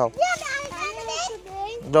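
Speech only: a child talking in a high voice, with a lower adult voice starting right at the end.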